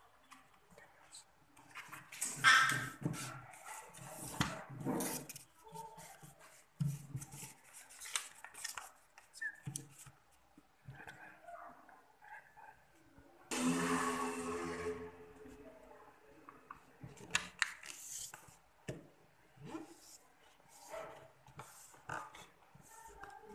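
Sheet of origami paper being handled and folded on a tabletop: irregular rustling, crinkling and the scrape of fingers pressing creases. A louder, longer noisy burst with some pitch in it comes about two-thirds of the way through.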